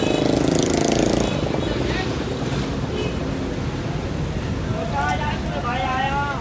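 Street traffic: a small motor vehicle engine passes close by with a rapid pulsing note for about the first second, over a steady low rumble of traffic.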